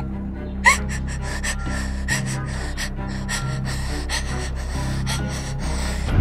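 A woman crying, with repeated sharp, gasping breaths and a short sob, over a low sustained dramatic music drone.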